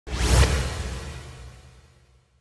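Logo intro sound effect: a single whoosh with a deep low boom. It peaks in under half a second, then fades away steadily over about a second and a half.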